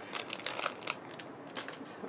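Clear plastic packet crinkling as fingers work a small ribbon bow out of it: a run of quick, irregular crackles.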